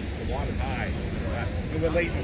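People talking nearby in short snatches over a steady low rumble.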